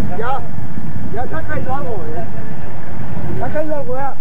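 Indistinct voices talking in three short spells, near the start, about a second and a half in and near the end, over a loud, steady low rumble.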